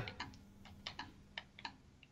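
Faint computer keyboard typing: about nine short, irregular keystroke clicks.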